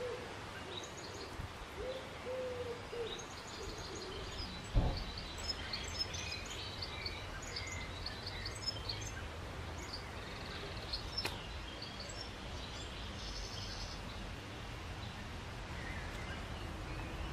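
Low hooting bird calls in several short phrases during the first four seconds, then small birds chirping high and quick for several seconds. A single dull thump about five seconds in is the loudest sound.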